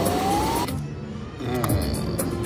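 Wheel of Fortune reel slot machine playing its rising anticipation tone while the third reel spins after two wheel-spin symbols have landed, the tone climbing in pitch and cutting off abruptly about two-thirds of a second in as the reel stops without the bonus. After a short lull, the machine's reel-spin sounds start again near the end as the next spin begins.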